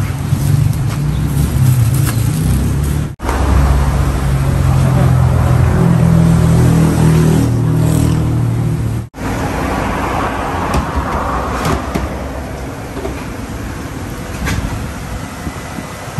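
Motor vehicle engine and traffic noise: a steady low hum and rumble, broken by two abrupt cuts about three and nine seconds in.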